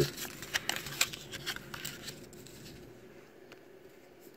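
Paper instruction leaflet rustling and crinkling as it is handled and unfolded, with a few light crackles that die away after about two seconds.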